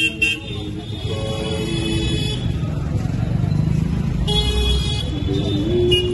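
Busy street ambience with music playing, held notes that change in pitch, and short high-pitched vehicle horn toots about a second in and again about four seconds in.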